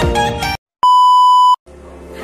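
Background music cuts off about half a second in; after a short gap, a loud, steady, high-pitched electronic beep sounds once for under a second and stops abruptly, followed by a low hum.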